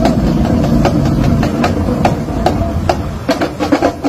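Drum strokes at uneven spacing, crowding together near the end, over a steady low rumble.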